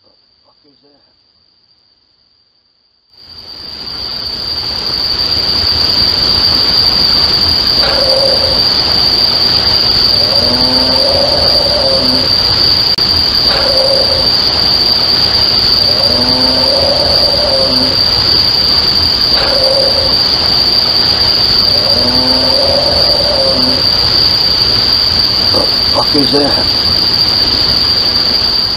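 Crickets' steady high trill with heavy hiss from a doorbell-camera microphone turned up loud, starting about three seconds in. Over it an unidentified animal call repeats about every six seconds: a short note, then a longer call that rises and falls. The owner cannot explain the caller; he rules out a coyote but not a bear.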